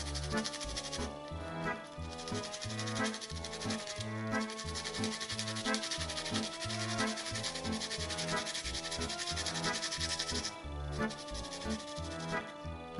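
A garlic clove rasped over a small metal hand grater in rapid scraping strokes. The grating stops about ten and a half seconds in. Background music with a steady bass line plays throughout.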